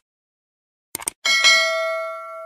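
Subscribe-button animation sound effect: a quick double mouse click about a second in, then a bell notification chime that rings out and slowly fades.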